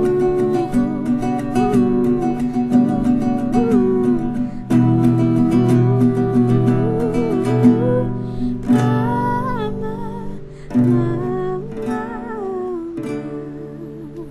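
A young female voice singing a melody to her own strummed acoustic guitar. The song grows quieter toward the end as it winds down.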